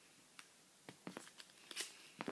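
Faint crackling and rustling of a folded paper packet being ripped and crumpled by hand, a few separate crackles.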